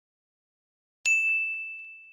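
A single bright ding about a second in, one high ringing tone that fades away over about a second and a half: a notification-bell chime sound effect.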